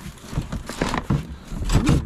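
Handling noise from a cardboard box and its contents: a series of rustles, scrapes and light knocks as a wicker basket is shifted and lifted out of the box.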